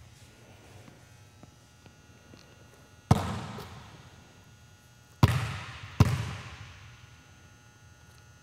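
A basketball thudding on a hardwood gym floor three times, about three, five and six seconds in, each thud ringing out in the gym's echo.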